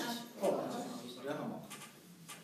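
A person's voice, indistinct and drawn out, starting about half a second in and fading by the end.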